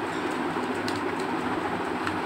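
Steady low hum with an even rushing background noise, and a couple of faint ticks about halfway through.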